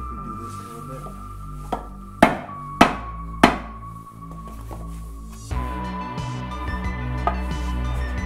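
Rubber mallet striking a wooden block to drive a rear main seal into a VR6 timing cover, still sitting high on one side. A light tap comes first, then three hard knocks about half a second apart, and one more tap later, all over background music.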